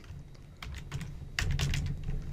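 Typing on a computer keyboard: a short run of keystrokes as a single word is entered, with a few clicks near the start and a quicker cluster in the second half.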